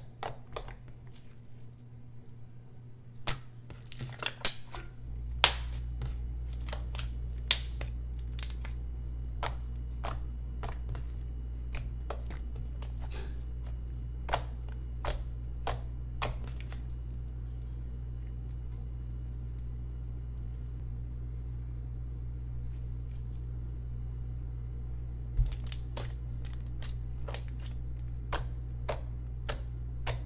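Glossy clicky slime pressed and poked by hand, giving sharp, irregular clicks and pops in quick spells, with a lull in the middle. A low steady hum comes in about five seconds in and keeps on under the clicks.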